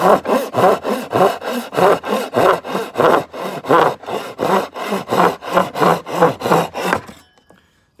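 Double-edged Japanese pull saw, on its crosscut teeth, cutting through a strip of cocobolo by hand, about three quick strokes a second. The strokes stop about seven seconds in as the piece is sawn through.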